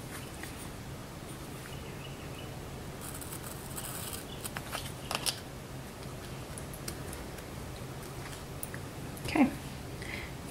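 Quiet handling of planner stickers and paper: a brief papery rustle about three seconds in, then a few light clicks and taps, over a low steady hum.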